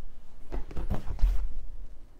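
Cardboard kit box being handled as its lid is lifted off and set aside: a few soft scuffs and low thumps, strongest in the middle.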